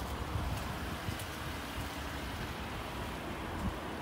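Steady outdoor background noise: wind on the microphone over a low rumble of road traffic.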